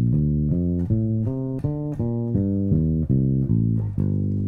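Electric bass played fingerstyle: a steady run of single plucked notes, about three a second, moving through an arpeggio exercise that takes alternate notes of a scale.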